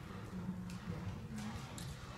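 Friesian/Percheron horse cantering on soft indoor arena footing: faint, muffled hoofbeats.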